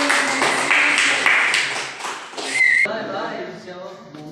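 Close hand clapping, about four claps a second, with voices and a short high whistle; it cuts off suddenly about three seconds in.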